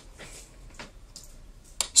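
A pause in a man's speech: soft breathing with a few faint clicks, and one sharper click near the end just before he speaks again.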